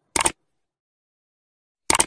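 Two short click sound effects from a like-and-subscribe button animation, each a quick double click, about 1.7 seconds apart.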